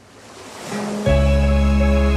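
Instrumental opening of an Uzbek pop song: a swelling wash of noise rises out of silence. About a second in, a deep sustained bass chord comes in with a melody line above it.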